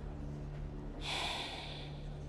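A woman's heavy, breathy exhale lasting about a second, midway through.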